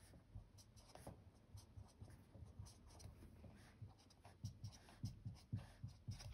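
Faint strokes and taps of a felt-tip marker on a whiteboard as numbers are written along a graph axis, with a few soft knocks in the second half.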